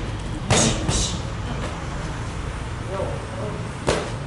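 Boxing gloves striking focus mitts: two quick smacks about half a second in, then another just before the end, over a steady low rumble.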